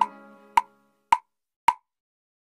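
Metronome click track ticking four times at an even pace, a little under two clicks a second, as the last ringing notes of the song die away in the first half-second.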